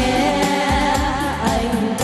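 Several women singing a song together into microphones, over live electronic keyboard accompaniment with a steady beat.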